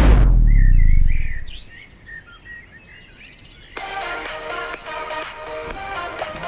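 Background music ending, its low notes dying away over the first second and a half. Faint bird-like chirps follow, then a new piece of music starts a little under four seconds in.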